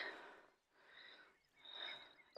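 Near silence outdoors, with a faint high bird chirp about a second in and again near the end.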